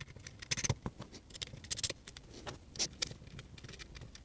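Small bolts being fitted by hand into a metal plate: irregular light metallic clicks and scrapes as the fasteners are handled and threaded.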